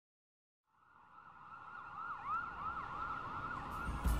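A siren fades in after a moment of silence and grows louder, with a quick, repeating up-and-down yelp over a steady tone.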